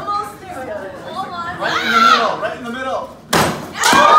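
People calling out, then a loud sharp whack a little over three seconds in as a stick strikes a hanging papier-mâché piñata and brings it down, with a second knock just before the end.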